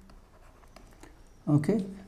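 Faint taps and light scratches of a stylus writing on a tablet screen, then a man says "okay" near the end.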